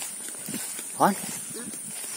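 A man's single short spoken word about a second in, over soft footsteps and rustling through tall grass, with a steady high-pitched hiss in the background.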